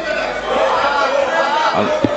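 Many voices talking at once in a large chamber: assembly members' chatter, with no one speaker clearly leading.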